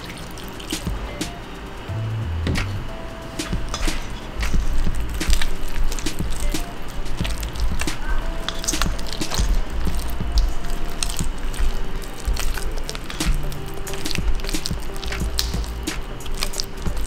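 Background music over a spatula stirring wet henna paste in a stainless steel bowl, with many small squelching and scraping clicks as water is worked into the powder.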